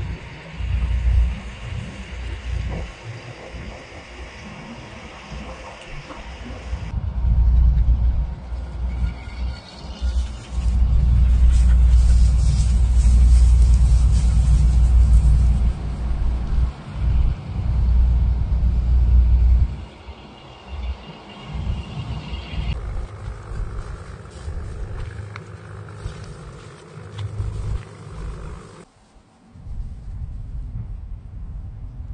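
Wind buffeting the microphone, a low rumble that comes and goes in gusts and is strongest in the middle stretch, with a faint hiss over it.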